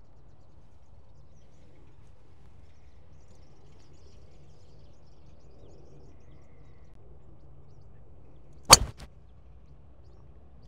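Driver clubhead striking a golf ball hit off the turf without a tee, a single sharp crack near the end over faint steady outdoor background noise.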